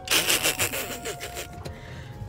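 A rough rubbing, scraping noise on the phone's microphone as it is handled, lasting about a second and a half.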